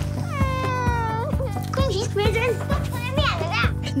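A child's long cry that drops in pitch and then holds, followed by shorter wavering cries, over background music with a steady beat.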